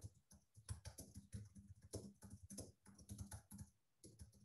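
Faint typing on a computer keyboard: a quick, uneven run of key clicks as a line of text is typed.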